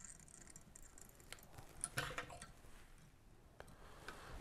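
Quiet, with a few faint ticks and soft rustles from tying thread being wrapped onto a hook in a fly-tying vise with a bobbin, mostly bunched about two seconds in.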